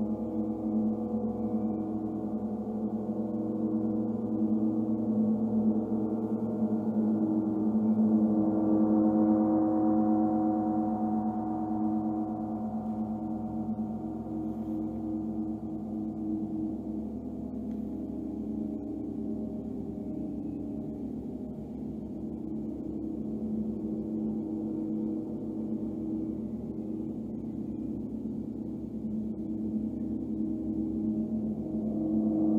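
Large hanging gongs played in a sound bath, giving a continuous wash of overlapping low, sustained tones. It swells to its loudest about a third of the way in, eases off, and builds again near the end.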